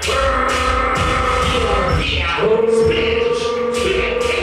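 Loud electronic dance music that starts abruptly, with held synth notes over a continuous heavy low end.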